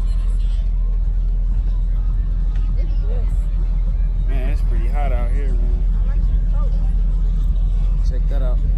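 Busy outdoor crowd ambience: a steady low rumble throughout, with indistinct voices rising between about three and six seconds in.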